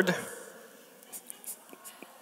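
A man's spoken phrase ends just as this begins and fades away in the hall. Then comes quiet room tone with a few faint clicks and taps.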